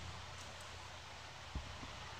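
Quiet background hiss and low hum, with one short, soft low knock about one and a half seconds in.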